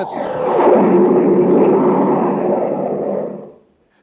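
Radio-drama sound effect: a loud rushing noise with a faint low hum running through it, fading out just before the end.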